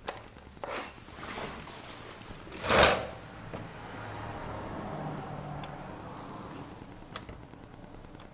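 Hand-handling noise of discarded electronics on a concrete floor: rustling and light clicks as the objects are moved and turned, with one loud short knock or rustle just before three seconds in. Two faint short high beeps, one about a second in and one near six seconds.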